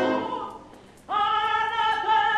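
Operatic singing. A held sung chord dies away in the first half second, and about a second in a soprano voice enters alone on a high sustained note.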